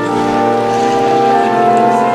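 Organ music: slow, held chords that change from one to the next.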